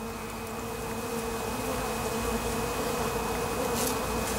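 Steady hum of honeybees buzzing.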